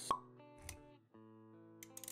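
Animated-intro sound effects over soft background music: a sharp plop just after the start, then a short low thud about half a second later, with sustained music notes that drop out briefly around the middle and come back.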